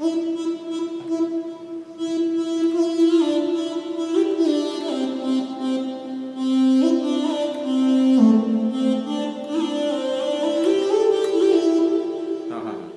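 Electronic keyboard playing a slow melody of long held notes in a sustained, string-like voice, each note ringing into the next as the tune steps up and down. The phrase is from the song's Mohana raagam melody.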